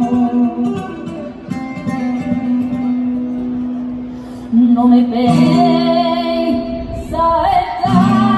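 A female flamenco singer holds long, wavering notes over a flamenco guitar. Her voice eases off in the middle and comes back strongly about four and a half seconds in.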